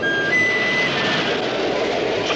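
Cartoon sound effect of a subway train running through a tunnel: a loud, steady rushing rumble. In the first second a few short high notes step upward over it.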